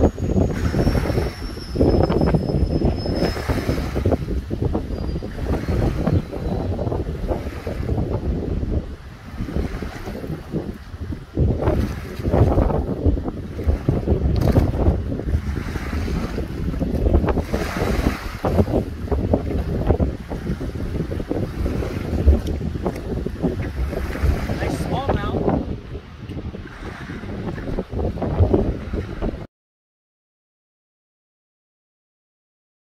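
Wind buffeting a phone microphone in heavy, uneven gusts, over small waves lapping at the shoreline.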